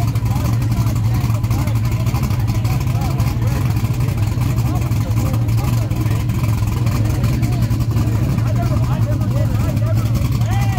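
Drag race car's engine running loud and steady without revving, with crowd voices over it.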